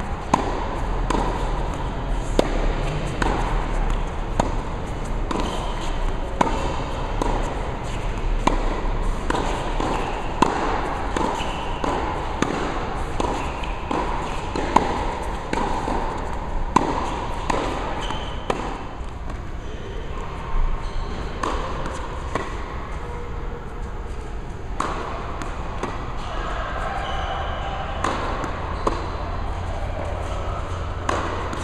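Tennis balls being struck by a racket and bouncing on an indoor hard court, a long run of sharp pops and knocks, several every couple of seconds.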